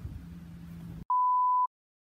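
Faint outdoor background with a steady low hum, then the sound cuts out and a single electronic bleep, one pure steady tone about half a second long, sounds loudly between stretches of dead silence.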